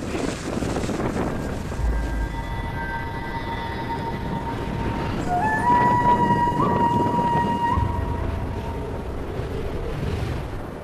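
Wind buffeting the microphone in a hailstorm on a bare mountaintop, a steady rough rumble. Over it, a few long held high notes of background music step up in pitch about halfway through.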